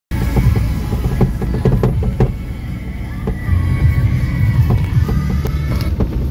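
Car driving along a rough, puddled lane, heard from inside the cabin: a steady low rumble broken by knocks and jolts from the uneven surface, with music playing.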